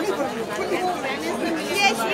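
Several people talking over one another: crowd chatter in the street.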